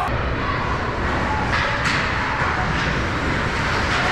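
Steady indoor ice-rink noise during hockey play, a broad hum of skates, players and arena, with two short sharp clacks about a second and a half in.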